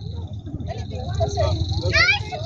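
Voices of people talking in the background over a steady low rumble of wind on the microphone, with a faint steady high-pitched tone; a voice rises in pitch right at the end.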